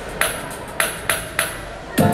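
Intro of an idol pop song over the stage PA: three sharp, ringing percussive hits about 0.6 s apart, in strict tempo, over a murmur of crowd voices.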